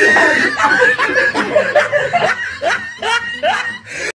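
Loud, rapid human laughter in short repeated bursts, some rising in pitch, mixed with a voice.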